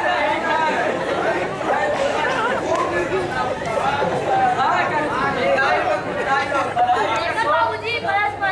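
Several people talking at once, overlapping voices and chatter in a large room.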